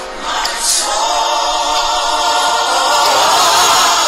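Christian worship song: a choir of voices holding one long sung note, swelling slightly after a brief dip at the start.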